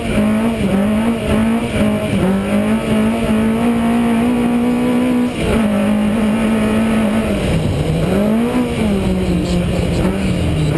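Rally car's engine under hard load while racing on a dirt track, held at high revs along the straight. About halfway through the revs drop suddenly, then rise and fall a few times through the next bend.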